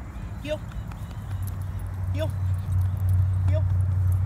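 A French bulldog giving three short whines, each rising and falling in pitch, spaced a second and a half or so apart. Beneath them a low steady rumble builds from about a second in and becomes the loudest sound.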